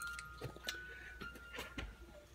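A cut-glass bowl ringing with a thin, clear tone that slowly fades, under a few light taps and rustles as folded paper slips are dropped into it.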